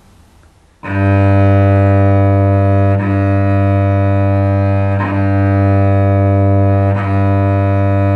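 Cello open string bowed in long, slow, even strokes: one steady low note that starts about a second in, with the bow changing direction about every two seconds, four strokes in all.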